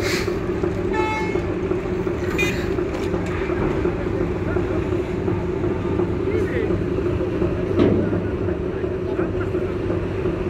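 Steady drone of large diesel engines running at a ferry terminal. A short horn toot sounds about a second in, and another brief toot follows at about two and a half seconds.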